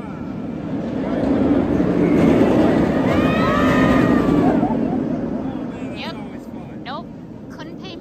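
Kumba, a B&M steel looping roller coaster, with a loaded train passing close on the track: a rumble that swells, peaks and fades over a few seconds. Riders' screams rise over it as the train goes by.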